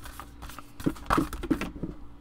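Tarot cards being shuffled by hand: soft rustling with a run of short card slaps, most of them in the second half.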